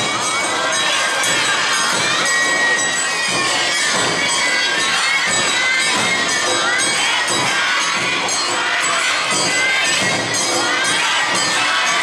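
Many high voices shouting festival calls together over awa odori festival music, loud and continuous.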